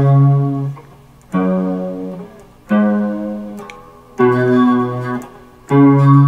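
Fender Stratocaster electric guitar playing single plucked notes slowly, one about every second and a half, each left to ring and fade: the C sharp ringing on, then F sharp, G sharp, B, and back to C sharp near the end.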